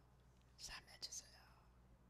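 Near silence with a faint steady hum, broken twice near the middle by short, soft breathy sounds from the preacher close to the microphone.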